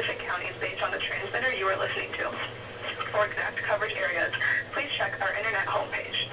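A voice reading an emergency warning test announcement, sounding thin with the high end cut off, as over a broadcast or phone line, with a steady low hum underneath.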